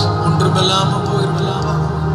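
A man singing a slow worship song into a microphone over a steady, sustained instrumental backing.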